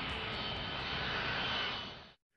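Jet airliner passing, a steady noise with a high engine whine that swells slightly and then fades out at the end.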